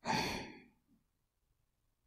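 A woman's soft, breathy sigh, about half a second long and fading out, followed by near silence.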